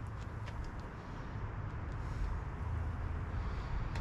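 Steady low rumble of outdoor background noise, with a few faint clicks.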